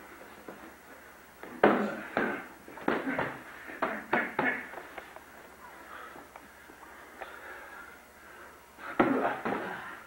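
Boxing-glove punches landing in quick flurries during sparring: a run of sharp smacks from just under two seconds in to about four and a half seconds, then another pair about nine seconds in.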